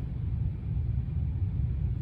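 A steady low rumble, with nothing higher-pitched over it.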